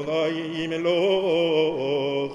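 A single voice chanting Hebrew prayer, holding long melodic notes that bend slowly up and down without a break.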